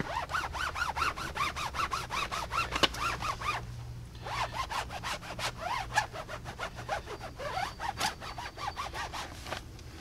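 Foam applicator pad rubbing water-based tire shine onto a rubber tire sidewall in quick back-and-forth strokes, with a short pause about four seconds in.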